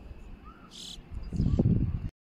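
Short high insect chirp from the alpine meadow just under a second in. It is followed by a loud low rumble of wind buffeting the microphone through the second half.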